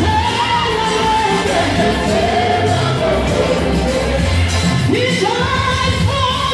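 Live gospel song: amplified lead and backing singers over a band with a strong steady bass. A new sung phrase from several voices comes in about five seconds in.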